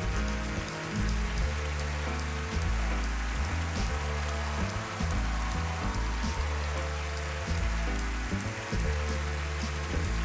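Jazz music carried by a deep bass line, under steady applause from a large audience.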